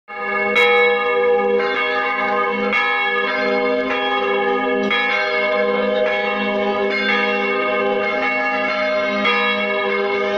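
Church bells ringing, struck about once a second, each ring overlapping the next in a continuous peal.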